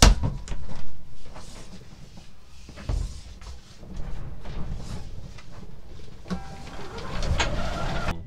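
Lines being handled at a sailing catamaran's helm station: a sharp clack as a rope clutch is snapped open, a second knock about a second later, then rope rustling and running over a steady rumble of wind and water.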